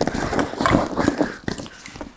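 Hands rummaging through a handbag: a busy run of rustling with small knocks and clicks as the items inside are shifted, dying down near the end.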